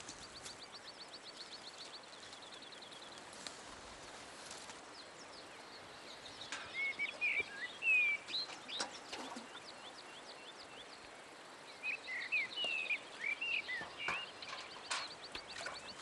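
Birds chirping in short sliding whistles, in two bursts of calls, with a rapid high trill of ticks in the first few seconds.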